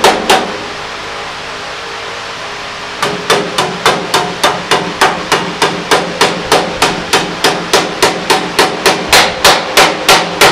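Ball-peen hammer tapping sheet metal to bend its edge over, each strike with a short metallic ring. One strike comes just after the start, then a pause of about two and a half seconds, then steady strikes about three a second.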